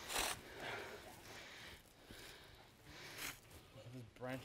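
A strip of bark being pulled and torn away from a standing tree trunk: a few short, faint tearing rasps, the strongest just after the start, then smaller ones about a second and a half and three seconds in.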